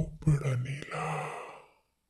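A person's long, breathy sigh that fades away over about a second and a half.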